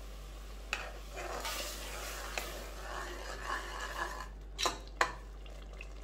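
Steel ladle stirring broken wheat rava in just-added boiling water in an aluminium pressure cooker pot: wet swishing and scraping, with sharp knocks of the ladle against the pot near the end, the last the loudest.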